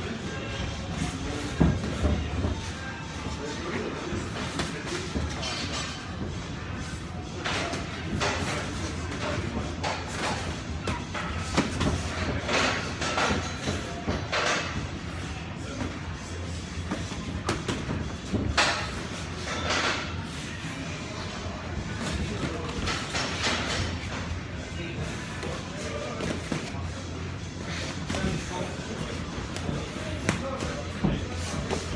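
Irregular thuds of boxing gloves landing during light sparring, heard over background music.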